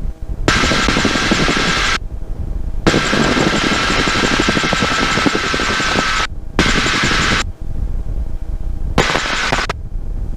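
1952 Bell 47G helicopter's piston engine and rotor at takeoff power during liftoff and climb, a steady low rumble with a rapid beat. Loud rushing noise from the headset intercom cuts in and out abruptly four times over it.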